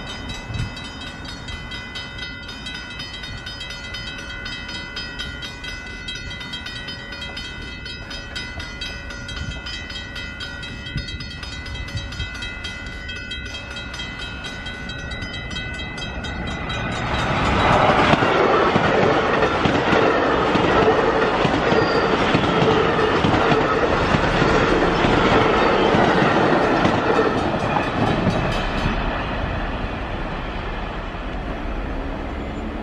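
Commuter train approaching on electrified track, at first with a steady high whine. About 17 seconds in it grows much louder as the train passes close by with wheel-and-rail noise, then eases near the end.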